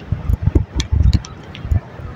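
Irregular low thumps of wind buffeting and handling on a handheld microphone carried at a quick walk, over street traffic.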